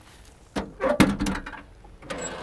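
The steel hood of a 1956 Continental Mark II being unlatched and swung open: a click about half a second in, then a louder clunk about a second in from the latch and hinges.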